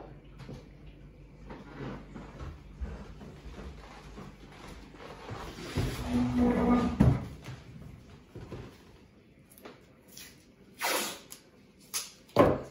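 Quiet handling and movement noises, a louder bump about halfway through, then green masking tape pulled off its roll with a short rasping tear near the end.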